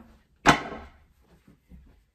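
A large crocheted blanket shaken open with one quick flap about half a second in, fading within half a second.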